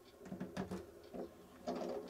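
Metal bar clamp being fitted and adjusted: a few faint, short clicks and rattles as the sliding jaw moves along the steel bar and the screw handle is handled, the last of them near the end.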